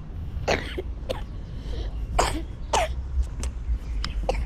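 Four short, breathy cough-like bursts from a person, in two pairs, over a steady low rumble.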